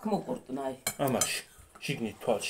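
Tableware clinking, with short ringing clinks about a second in, while a person's voice sounds over it.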